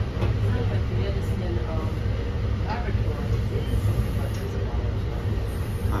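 Steady low rumble inside an NJ Transit Multilevel rail coach, heard from the door vestibule as the train rolls slowly along a station platform to pull in.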